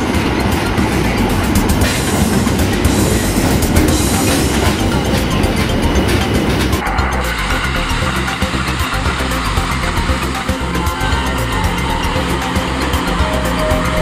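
Background music mixed with train sound: a subway train running into a station platform, then, after a change about seven seconds in, an electric commuter train rushing past on the tracks.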